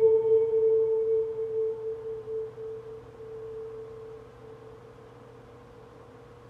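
A single held musical tone, ringing and slowly dying away over several seconds, with a faint hiss beneath it.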